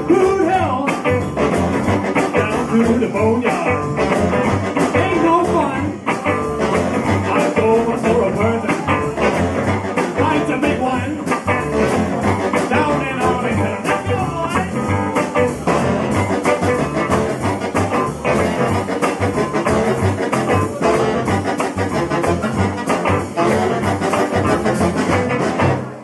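Live band playing an instrumental passage with hollow-body electric guitar, saxophones, upright bass and drums over a steady, driving beat. The music stops right at the end.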